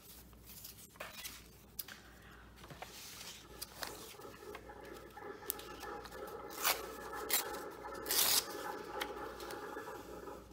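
Paper scraps being handled, torn and rubbed down onto a collage page: soft rustling and rubbing, with a few short sharp rips in the second half, the longest and loudest a little before the end.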